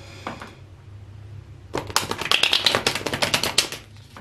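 A deck of tarot cards being shuffled by hand: a rapid run of card clicks that starts about halfway in and lasts about two seconds, after one or two single clicks at the start.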